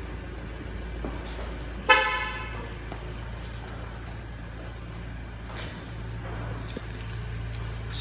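A single short car-horn toot about two seconds in, with a sharp start and a fade that rings on in an enclosed bay. A steady low hum runs underneath.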